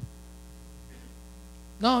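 Steady low electrical mains hum from the microphone and sound system during a pause in speech. A man's voice comes in near the end.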